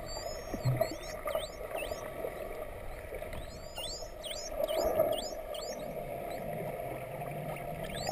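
Underwater recording of dolphins whistling: a run of high whistles that swoop down and back up, repeating every half second or so and coming thickest in the second half, over muffled water noise and a steady low hum.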